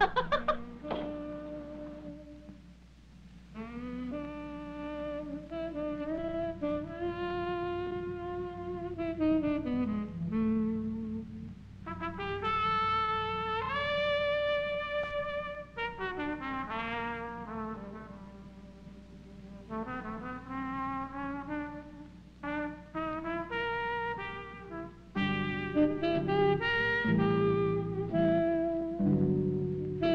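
Film score: a brass instrument plays a slow, jazzy melody of long held notes with some sliding pitch changes, and a fuller, louder accompaniment comes in near the end.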